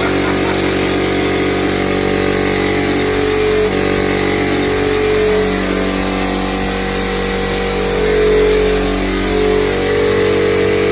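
Air compressor for a drywall texture hopper gun running with a loud, steady drone that swells slightly now and then.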